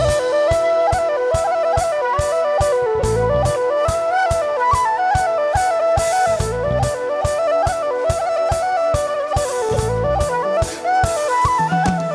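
Live Celtic fusion band music. A whistle plays a quick stepping reel-like melody over a steady, driving drum beat, with a bass guitar coming in and out underneath.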